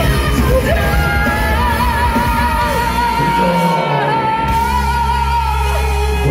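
A heavy metal band playing live in a hall, loud, with a singer holding one long note over distorted guitars. The bass and drums drop out for a moment about halfway through, then come back in.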